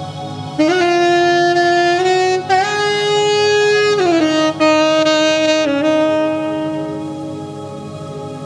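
Tenor saxophone holding long, sustained notes. It scoops up into a higher note about half a second in and shifts pitch a few times, and the last note fades toward the end. Underneath runs a steady low buzzing drone.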